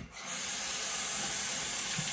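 Water running from a bathroom tap as a steady hiss.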